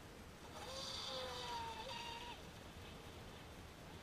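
Feilun FT012 RC speedboat's brushless motor whining in a steady high tone for about two seconds, starting about half a second in and stepping in pitch just before it stops, as the capsized boat works to right itself.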